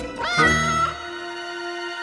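A cat meows once, a short call that rises and then holds for about half a second, over background music.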